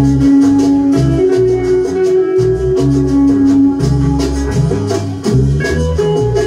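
Peruvian cumbia (guaracha) playing, with a lead guitar melody over a bass line and a steady beat of light percussion.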